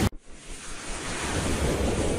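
A hit of intro music cuts off right at the start, then a noisy whoosh sound effect swells up, rising in pitch as it builds.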